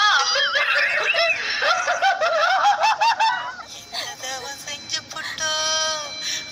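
A woman laughing hard in high-pitched, rapidly repeating bursts for about three seconds, then a short burst of music with a held note near the end.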